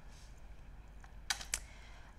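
Two quick, faint computer-keyboard key clicks about a fifth of a second apart, over a low steady background hum.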